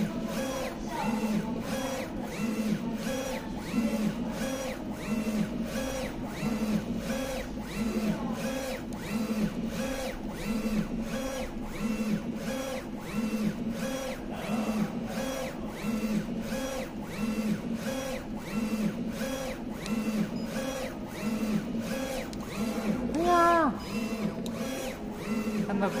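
A 3360 UV flatbed printer printing on acrylic: the print-head carriage shuttles back and forth in a steady, regular, repeating rhythm. Near the end a short pitched sound rises and falls once.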